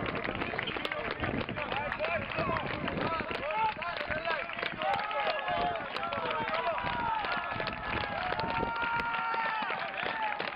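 Many voices talking and calling out at once, overlapping so that no words stand out, with a few longer drawn-out calls in the second half: a group of football players chattering on the field after a game.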